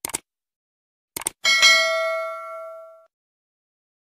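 Subscribe-button animation sound effect: two quick mouse clicks at the start, a few more just over a second in, then a bright notification-bell ding that rings for about a second and a half and fades away.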